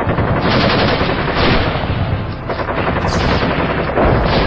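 Loud, dense, rapid crackle of sharp cracks, like automatic gunfire, with a brief high hiss about three seconds in.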